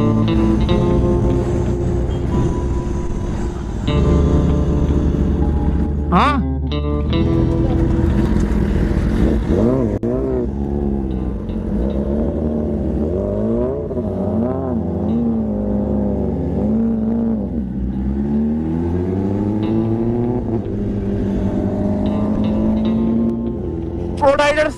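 Sport motorcycle engine running at high speed, its pitch climbing and dropping with throttle and gear changes, with a sharp rising whine about six seconds in. Background music plays under it.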